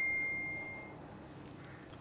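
A phone's message notification: one clear high ding that rings on and fades out about a second in.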